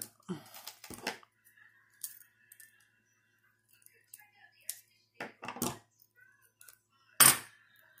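Small metal clicks and clinks of 14-gauge fence-wire chainmail rings and two pairs of slip-joint pliers as a ring is twisted closed. Scattered short clicks, with a louder knock near the end.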